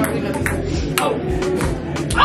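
Table tennis ball clicking off paddles and table in a rally: several sharp taps about half a second apart, over background music.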